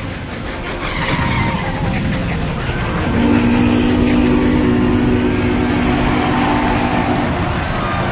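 Car driving on the road, with the engine revving up and down, and a steady held tone lasting about four seconds in the middle.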